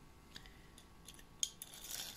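A turbine shaft assembly being handled in the fingers: a few faint clicks, with a sharper one past halfway, and a brief rustle near the end.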